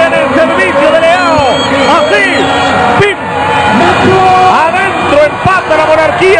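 Spanish-language football TV commentary over continuous stadium crowd noise during an attack.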